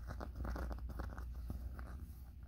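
Fingertips scratching and tapping over the embossed gold plate of a costume skirt, with the fabric rustling: a quick, irregular run of small crackly clicks.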